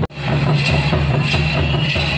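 Traditional drums beating about every two-thirds of a second over crowd noise, with a steady low hum and a steady high tone underneath. The sound cuts out for an instant at the very start.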